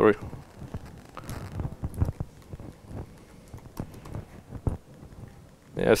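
Typing on a laptop keyboard: light, irregular key clicks as commands are entered in a terminal, with a short spoken word near the end.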